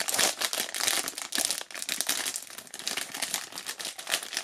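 Foil blind-bag wrapper crinkling and crackling in the hands as it is handled and worked open, in dense irregular crackles.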